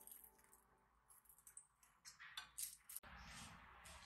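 Near silence: room tone with a few faint light clicks, a cluster of them about two and a half seconds in.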